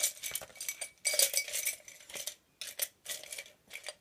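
A bundle of wooden-handled paint brushes rattling together and being dropped into a ceramic jar: a run of light clicks and clatters.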